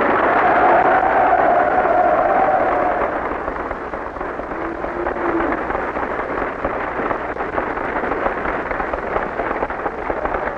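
Loud crowd noise: a dense din of many voices, with one long held cry over the first three seconds and a shorter lower one about five seconds in. It eases off somewhat after the first few seconds.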